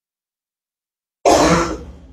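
A man clears his throat once, close to the microphone: a short harsh burst starting about a second in and fading away.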